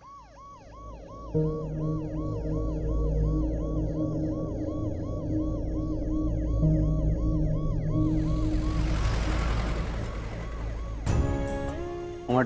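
Ambulance siren yelping in a fast rise-and-fall, about three and a half cycles a second, fading away about 8 to 10 seconds in. A low sustained music drone plays under it from about a second and a half in, and a short musical sting near the end.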